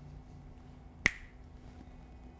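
A single sharp finger snap about a second in, with a brief ringing tail.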